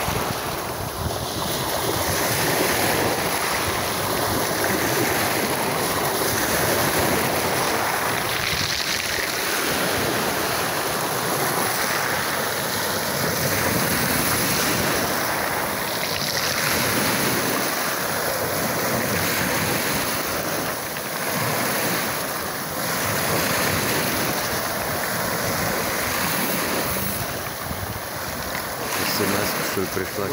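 Small sea waves breaking and washing up over a pebble beach, the surf swelling and easing every few seconds.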